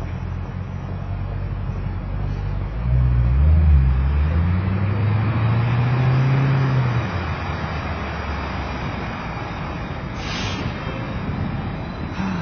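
City street traffic. A motor vehicle's engine gets louder and rises in pitch about three seconds in, is loudest around four seconds, then fades after about seven seconds. A short hiss comes about ten seconds in.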